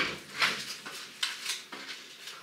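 A few light clicks and rattles of small hard objects being picked up and sorted by hand on a shelf.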